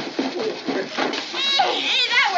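A sack of wrapped presents being dumped out and pawed through, with paper and cloth rustling, under children's excited squeals and exclamations; a high child's squeal comes about one and a half seconds in.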